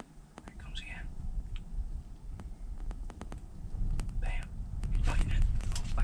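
Low rumble of wind against a pop-up ice-fishing shelter, with two brief whispered words and scattered light clicks.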